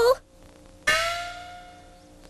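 A single bell-like chime from the cartoon's music score, struck once about a second in and ringing out as it slowly fades.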